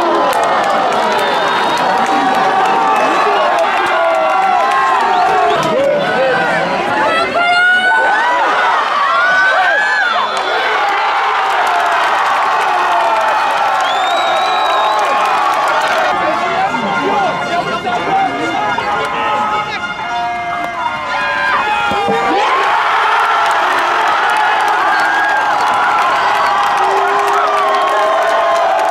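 Crowd of spectators at a field hockey match shouting and cheering, many voices overlapping. It dips briefly about two-thirds through, then swells again near the end.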